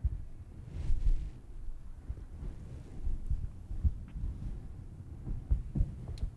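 Low, muffled thumps of footsteps and clothing rubbing on a clip-on microphone as a man walks over and kneels down, with a light click about four seconds in.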